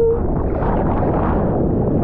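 Seawater sloshing and splashing around a surfboard as a surfer paddles, picked up right at the waterline, so it comes through loud and muffled. A brief gurgling warble right at the start.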